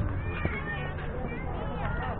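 Children's high-pitched voices calling and chattering across a youth baseball field, over a steady low rumble.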